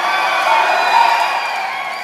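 Crowd at a political rally cheering and shouting. The noise swells to a peak about a second in and then slowly dies down.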